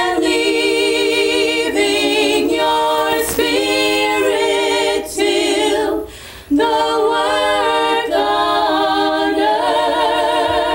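Three women singing a cappella in harmony, with long held notes and vibrato, pausing for a breath between phrases about six seconds in.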